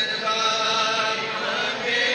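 A devotional Urdu naat, a solo voice chanting in long held notes.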